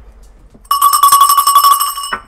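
A bell ringing loudly: one continuous ring with a fast rattle, starting under a second in and stopping abruptly after about a second and a half.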